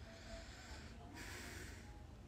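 A woman breathing out hard behind a hand held over her mouth: a faint breath, then a longer hissing exhale a little over a second in. She is upset and trying to steady herself.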